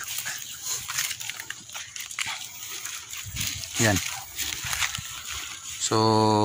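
Crisp cabbage leaves and a plastic sheet rustling and crackling as harvested Chinese cabbage heads are handled and packed into a bundle, with a short call about four seconds in.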